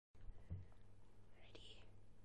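A faint, whispery voice sound about one and a half seconds in, over a low steady hum, with a soft bump about half a second in.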